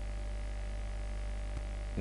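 Steady low electrical hum, with one faint click about a second and a half in.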